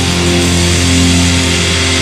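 Death/black metal recording: heavily distorted electric guitars and bass holding long, sustained chords without drum hits.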